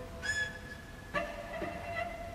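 Two cellos playing sparse contemporary music. A high, thin note begins about a quarter second in and fades. Just past one second a new note starts sharply and rings on.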